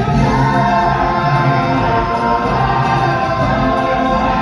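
Song from a live stage musical: several voices singing together over musical backing, loud and continuous.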